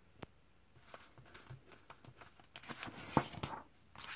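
A comic book page being turned by hand, with the paper rustling and crinkling for a few seconds. It grows louder toward the end, with a sharp click about three seconds in.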